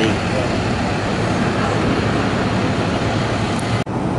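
Steady city street traffic noise, an even wash of passing vehicles, broken by a brief sudden dropout near the end.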